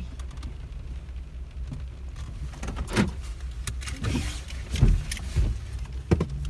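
Inside a parked car with the engine running: a steady low hum, with a few knocks and clicks in the cabin about three seconds in and again near the end.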